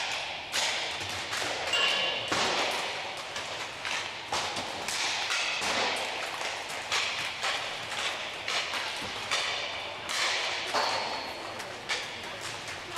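Inline hockey sticks hitting pucks and pucks banging off the rink boards during a warm-up, a run of sharp cracks and thuds at irregular intervals, several every couple of seconds. Each one echoes in the large hall.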